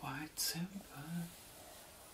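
A woman speaking softly for about the first second, then quiet room tone.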